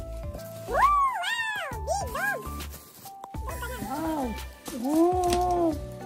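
Several high calls that rise and fall in pitch, the last one longer and lower, like an animal's meowing or whining, over background music.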